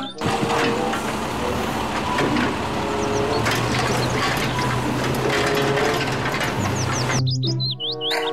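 A real refuse truck working: its diesel engine running with a steady low hum under the mechanical noise of its arm lifting and tipping a wheelie bin. Birds chirp a few times in the background.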